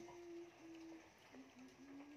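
Near silence with a faint, steady low hum that breaks off about a second in and comes back a little lower in pitch.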